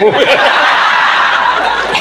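Audience laughing: a dense wash of many people's laughter that follows the end of a spoken line.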